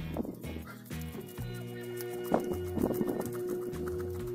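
Background music with sustained tones, over bursts of quick scraping as a knife is dragged against a fish's scales to remove them.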